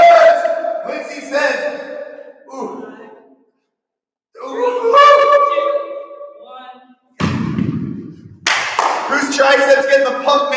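A voice making drawn-out pitched sounds, and about seven seconds in a low thud as a dumbbell is set down on the rubber gym floor or exercise mat.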